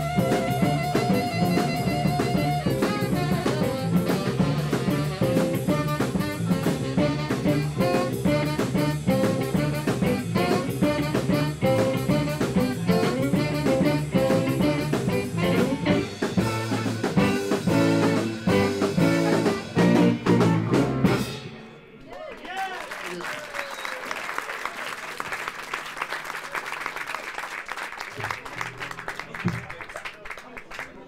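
Texas blues band with electric guitar, saxophone, piano, bass and drums playing live, the tune ending about two-thirds of the way through. The audience then applauds.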